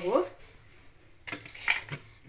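Kitchen vessels clinking: a few sharp clinks of utensils being set down on the counter, about a second and a half in.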